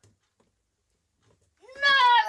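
Near silence, then near the end a young person's high, wavering wail begins, a drawn-out cry of dismay.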